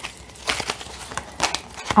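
Thick tarot cards being handled: a card pulled from the deck and laid onto the cloth spread, with several light snaps and rustles of card stock.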